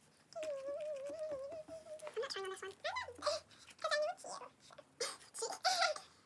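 A child humming wordlessly in a high, wavering voice: one long held note of about two seconds, then several shorter phrases that slide up and down.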